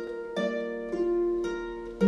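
Harp playing a gentle broken-chord accompaniment: single plucked notes, each left to ring and fade, coming about every half second.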